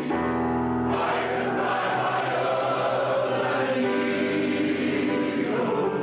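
Welsh male voice choir singing in harmony, holding sustained chords, with a change of chord about a second in and again near the end.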